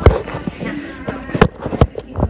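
Handling noise from a phone being moved about close to its microphone: sharp knocks, the loudest at the very start and two more close together near the end.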